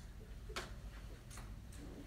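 A few faint clicks over a low, steady hum: a sharper click about half a second in, another just under a second later, and a fainter tick near the end.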